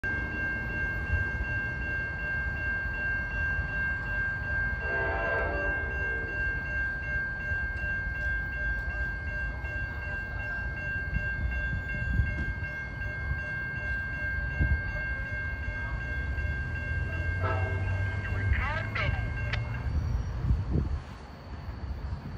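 Amtrak diesel passenger locomotive approaching, sounding its horn in two short blasts, about five seconds in and again near the end. The engine's low rumble grows in the last few seconds. Behind it is a steady high-pitched whine that stops shortly before the end.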